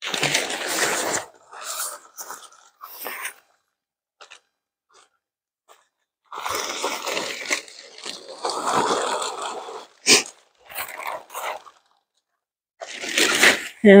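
Polyester tent fabric rustling and crinkling in irregular bursts as a folded pop-up hub tent is lifted and pulled open, with a near-silent gap of about two seconds in the middle.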